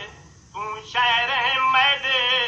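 A man chanting a Saraiki noha, a mourning lament, with a quavering, held melodic line. The voice breaks off at the start and comes back in about half a second in. The old radio recording sounds narrow and dull.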